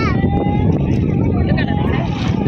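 Wind buffeting the microphone in a steady low rumble, with brief voices calling out near the start and again about one and a half seconds in.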